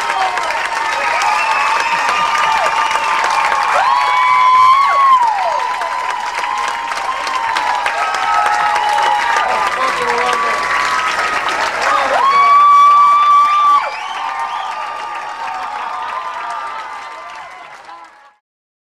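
Audience applauding and cheering, with long high whoops from the crowd that are loudest about four seconds in and again around twelve to fourteen seconds in. The sound fades out at the end.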